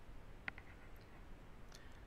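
A single sharp computer mouse click about half a second in, with a fainter click near the end, over a faint low room hum.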